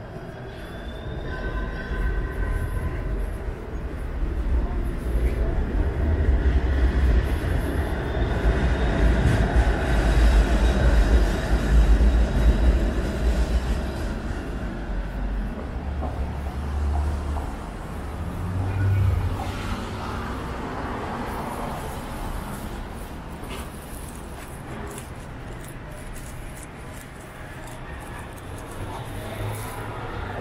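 A TTC streetcar running past on its rails: a low rumble that builds to a peak about ten to twelve seconds in and then fades, with a faint high whine in the first few seconds.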